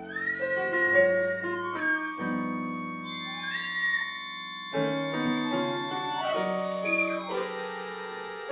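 Free improvisation: an accordion holds sustained chords while a flute plays breathy notes that slide upward into pitch.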